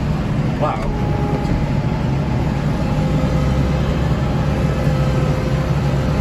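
A Kubota tractor's diesel engine and its front-mounted snowblower run steadily, heard from inside the cab, as a continuous low drone with a faint steady whine on top, while the blower clears wet slush.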